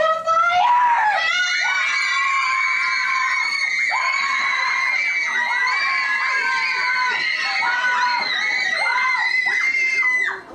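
A group of children screaming together: brief cries at the start, then from about a second in a long shriek of several high voices held nearly steady.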